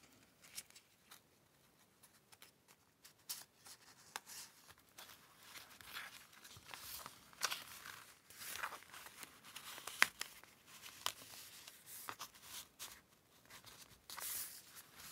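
Faint rustling and crinkling of paper and fabric being handled, with scattered light clicks and taps: a strip of silk scarf rag being knotted onto a paper tag, and the tag being slid into a paper journal pocket.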